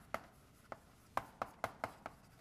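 Chalk writing on a blackboard: about six short, sharp taps, coming closer together in the second half.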